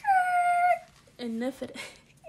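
A woman's voice holding one high note for just under a second, a sung or squealed 'ooh', followed by a few short fragments of speech.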